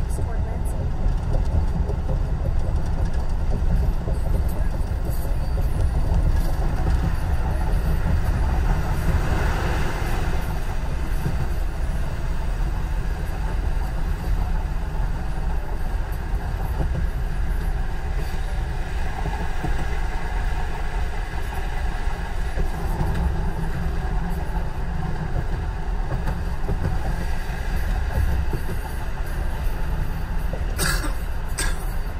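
Steady road noise inside a moving car's cabin at highway speed: a continuous low rumble of tyres and engine with a hiss of wind and passing traffic.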